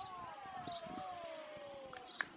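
A single long call from a person's voice, held for about two seconds and falling steadily in pitch.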